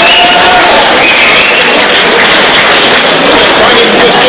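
Crowd noise from a packed hall: many voices talking and calling out at once, loud and steady, with a few shouts standing out.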